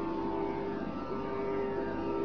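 Steady sruti drone of a Carnatic concert, holding one set of fixed pitches with a light hiss of an old recording under it.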